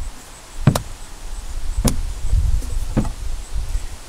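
Three sharp taps at an even pace, about one a second, with a low rumble between them.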